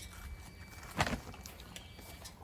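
A single short, sharp knock about a second in, over faint outdoor background.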